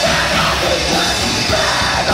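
Live death metal band playing: distorted electric guitars, bass and drums under a growled, shouted lead vocal, loud and dense throughout.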